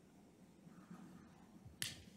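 Near silence: room tone, with a single sharp click near the end.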